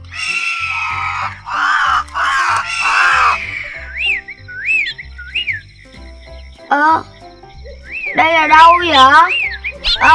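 Cartoon sound track: soft background music under wordless character vocalisations. A rough, raspy cry fills the first three seconds, then come short chirpy tweets sliding up and down, and near the end a warbling, squeaky voice.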